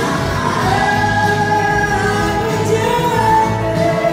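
A live soul-rock band playing: a woman sings lead in long held notes, backed by harmony singers, over electric guitar, bass and drums, heard from the audience in a theatre.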